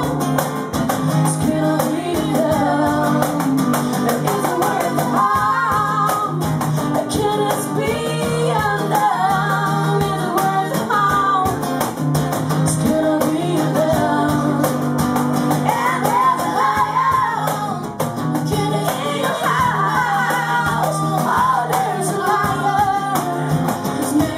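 A small live band playing a song, with a voice singing over the instruments.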